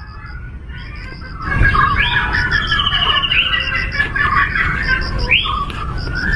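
Birds calling: a quick run of chirps and several rising whistled calls, over a low rumble that grows louder about a second and a half in.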